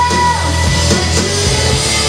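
Live rock band playing loudly: electric guitars, bass and drums, with a held note that ends early on.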